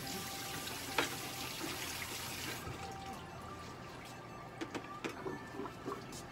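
Water running steadily, as from a tap, that stops abruptly about two and a half seconds in, followed by a few light knocks.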